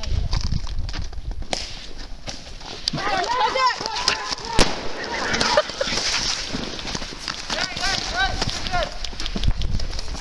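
Voices calling out during an airsoft skirmish, with a few sharp clicks and pops of airsoft guns firing, the loudest snap about halfway through.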